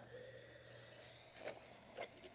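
Near silence, with a faint trickle of water being poured into the metal tip of an oxalic acid vaporizer that fades out within about half a second.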